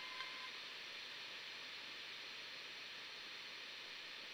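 Faint, steady hiss of noise in a lull of an experimental electronic track, with a thin held tone dying away about half a second in.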